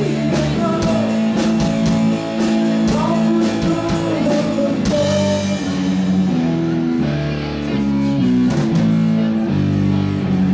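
Live rock band playing: electric guitar chords over bass and a drum kit. A steady cymbal beat runs through the first half and drops away about five seconds in, leaving the guitars ringing.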